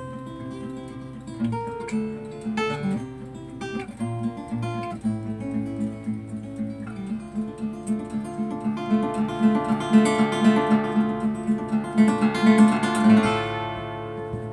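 Solo acoustic guitar played live: a picked melody over a fast repeated low note, growing louder through the middle and easing off near the end.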